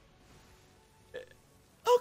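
Faint background sound with a brief vocal sound about a second in, then a man's voice starting loudly just before the end, with a throaty, falling pitch.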